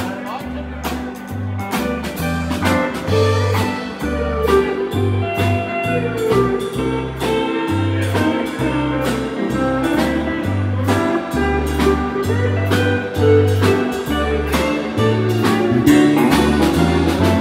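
Live country band playing an instrumental break: a pedal steel guitar carries the melody with long, sliding notes over a bass line and a steady drum beat.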